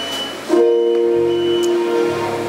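Live worship band music: a sustained chord comes in about half a second in and holds, with bass guitar notes underneath.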